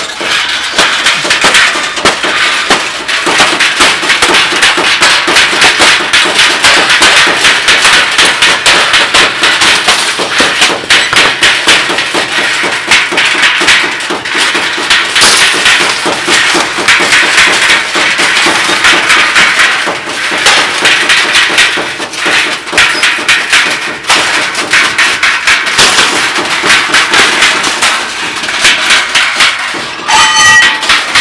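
Several players beating on scrap metal with handheld strikers in an improvised percussion jam: a dense, continuous rattle of rapid metallic taps and clanks, many strikes a second, easing briefly now and then.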